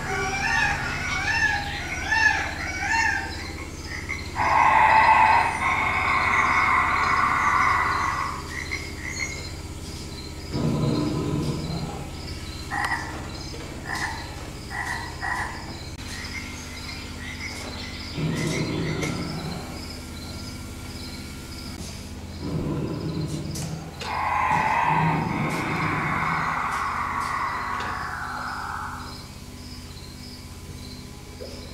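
Played-back nature soundscape of an animatronic prehistoric-animal display: a steady pulsing chorus of chirps with repeated croaking calls, two long loud calls of several seconds each, and a few low grunts in between.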